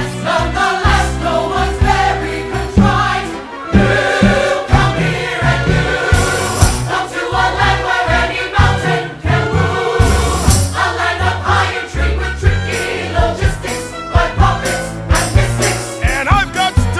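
Up-tempo musical-theatre cast-recording music: a pit orchestra with driving percussion and heavy bass, with an ensemble choir singing over it.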